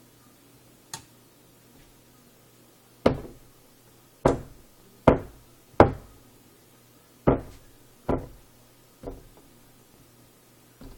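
Swatting at a mosquito: seven sharp slapping hits at uneven intervals, from about three seconds in to near the end, after a faint tap about a second in.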